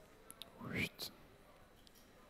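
A man's short breathy vocal sound, rising in pitch, between spoken phrases, with a few faint clicks around it.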